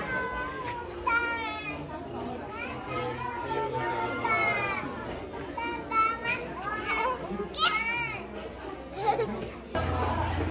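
Children's high voices chattering and calling out, several at once.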